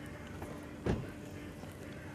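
A single dull thump a little under a second in, over a steady faint hum and background noise.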